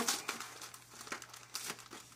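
Plastic Goldfish crackers snack bag crinkling in the hands in irregular crackles as it is worked open.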